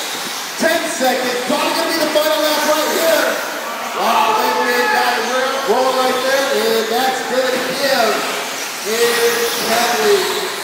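A man's voice: the race announcer calling the race, though the words are not made out. Beneath it, a steady high hiss of 1/10-scale electric RC short-course trucks running on the dirt track.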